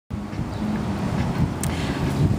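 Street ambience: a steady low rumble of traffic with wind buffeting the microphone.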